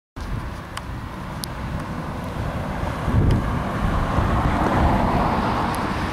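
A car going by on the road, its noise swelling to a peak about five seconds in, with wind buffeting the microphone throughout.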